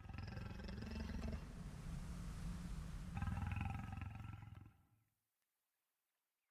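An orc's roar: one long, rough creature scream that swells again about three seconds in and cuts off after about five seconds.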